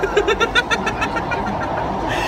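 Two people laughing hard, a quick run of short 'ha' pulses through the first second that then trails off, over the steady running rumble of a crowded metro train carriage.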